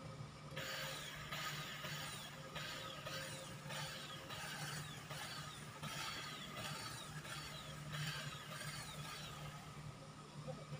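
Hand shears snipping ground cover, a short metallic scrape with a falling squeal about one and a half times a second, over a steady low hum.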